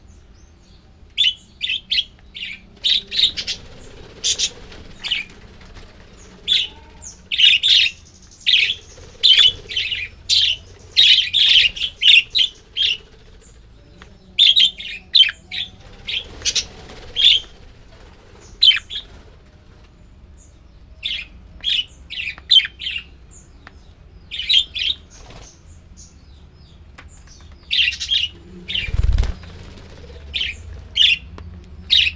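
A flock of budgerigars chirping: clusters of short, rapid, high chirps with brief pauses between them. Near the end there is a low thump with wings fluttering as birds fly down onto the feeding dish.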